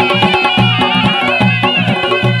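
Two surnais, loud double-reed shawms, playing a Chitrali folk melody in close unison with slight pitch bends, over stick-beaten Chitrali dol and small drums keeping a steady beat.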